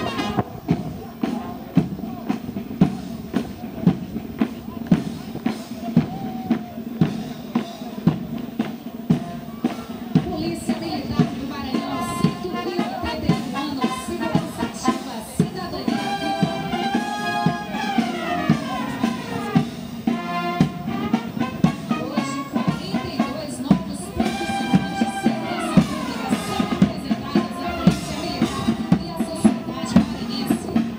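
Military police marching band playing a march: bass drum and snare keep a steady beat of about two strokes a second under brass. The brass line runs downward twice, once about midway and again later on.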